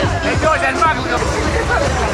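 Music playing amid a crowd's chatter and shouting voices.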